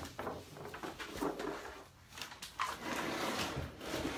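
Wooden chest of drawers being shifted and turned round on the floor: irregular scraping with a few knocks.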